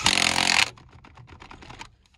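Half-inch DeWalt cordless impact wrench hammering a wheel's lug nut tight in a short, loud burst of under a second, followed by a run of quieter rapid clicks.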